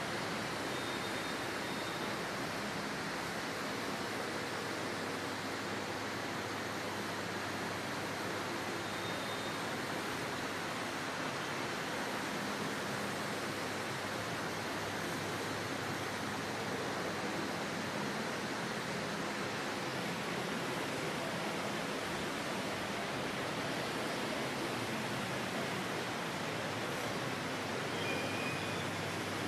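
A steady, even hiss with no distinct events, unchanging throughout.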